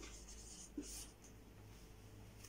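Faint strokes of a felt-tip marker on a whiteboard, a soft scratchy writing sound that is strongest a little under a second in.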